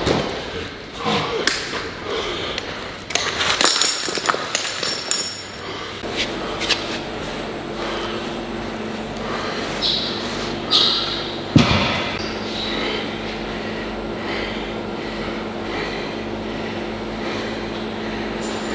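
Heavy stone thuds and knocks of Atlas stones on the floor and loading platform, echoing in a large metal-walled hall. After about six seconds they give way to a steady machine hum with two held tones, broken once by a sharp knock about halfway through.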